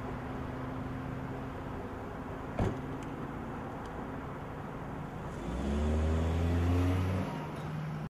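Car engine idling steadily, with a single knock about two and a half seconds in, then revved up about five seconds in, rising in pitch and getting louder for a couple of seconds before settling; the sound cuts off suddenly at the end.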